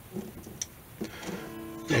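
Kay archtop guitar strings sounding: a few faint clicks, then about a second in a single plucked note rings out with steady overtones for nearly a second.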